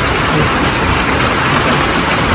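Steady, heavy rain falling, an even hiss with no let-up.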